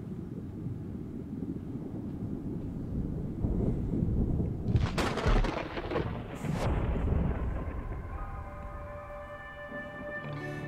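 Deep rumbling sound effects from a music video's opening, with a loud crack about five seconds in and a smaller one soon after. Held musical notes fade in over the last couple of seconds.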